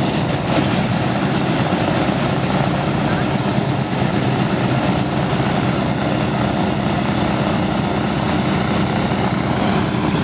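Boeing B-17 Flying Fortress's Wright R-1820 nine-cylinder radial engines running steadily on the ground, a deep, even propeller-driven rumble.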